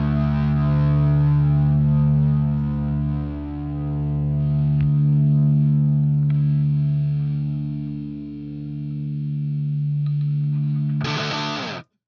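Distorted electric guitar holding a sustained closing chord through effects, swelling and fading slowly; the bass drops out about five seconds in. Near the end a short bright noisy burst, then the music cuts off suddenly.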